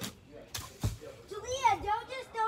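Three sharp knocks in the first second, then a child's high-pitched voice calling out with a wavering pitch in the second half.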